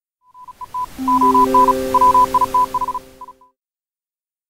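Short electronic jingle: a string of short and longer high beeps at one pitch over a hiss, with three synthesizer notes entering one after another to build a held chord. It stops about three and a half seconds in.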